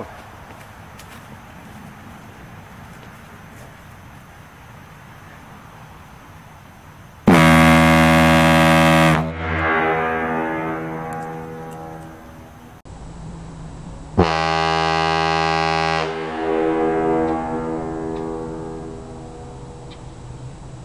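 Homemade PVC air ship horn with a large flared bell, blown from a compressed-air tank: two deep blasts about two seconds each, about seven seconds apart, each swooping up to pitch at the start and trailing off in a long echo.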